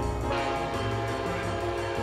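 Diesel locomotive air horn sounding one long chord, starting a moment in and stopping near the end, over jazz piano music with a bass line.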